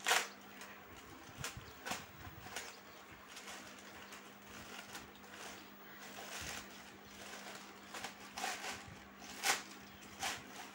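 Plastic courier mailer crinkling and rustling as hands tear it open and pull out a plastic-wrapped packet, with sharp crackles just after the start and near the end. A faint steady hum lies underneath.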